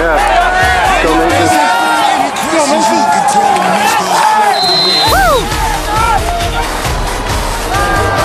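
Backing music with a vocal line and a beat. The bass drops out for a few seconds and comes back in about five seconds in, with crowd cheering mixed underneath.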